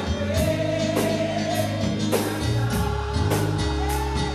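Live gospel music: voices singing over a keyboard and a drum kit, with a steady beat of drum and cymbal strokes a little under two a second.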